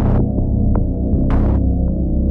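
Dark cinematic synthesizer drone from Dark Zebra HZ, with a deep throbbing low end under sustained layered tones. A brief airy noise swell rises and falls about halfway through, with a few faint ticks.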